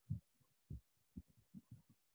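Near silence broken by about five faint, short, low thumps at uneven intervals.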